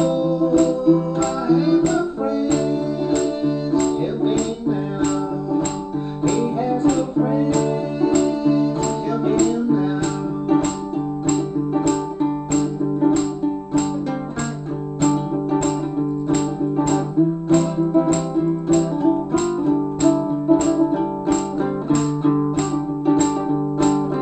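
Baritone ukulele played solo, strummed in a steady rhythm of about two strokes a second over a changing melody.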